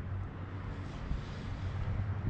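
Steady outdoor background: a low rumble with a faint hiss, no distinct events.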